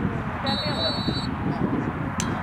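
A referee's whistle blows once for under a second, a steady shrill note, about half a second in, over indistinct spectator chatter.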